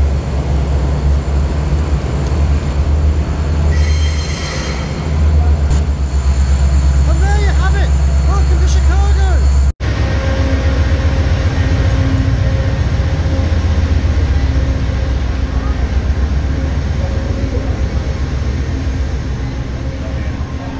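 Steady loud low rumble of a train standing at a station platform, with people's voices in the background. The sound cuts out for an instant about ten seconds in.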